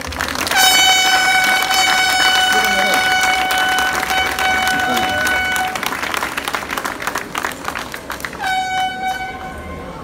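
A handheld air horn sounds one long steady blast of about five seconds, then a shorter blast near the end, over the crowd's clapping.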